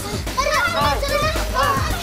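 Children shouting and yelling over background music.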